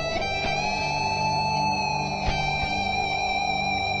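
Guitar music: strummed chords ringing out, with a fresh strum about two seconds in.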